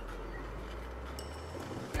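Steady road noise heard inside a moving car's cabin: an even low rumble of tyres and engine at highway speed.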